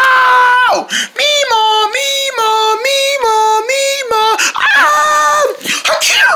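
A high-pitched voice screaming in panic over a fire. It holds one cry, then wavers up and down between two pitches for about three seconds, then gives another short held cry.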